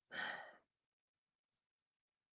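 A man sighing once: a short breathy exhale of about half a second.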